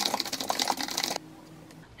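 Rapid typing on a computer keyboard, a quick run of key clicks that stops a little over a second in.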